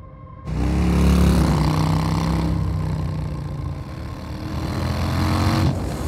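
Vehicle engines running at speed, a car and a motorcycle, starting suddenly about half a second in.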